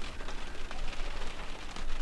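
Steady patter of rain on the car's roof, heard from inside the cabin.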